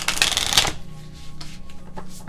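A deck of oracle cards shuffled by hand: a dense, rapid burst of card-on-card flicking for about the first three-quarters of a second, then softer handling of the deck.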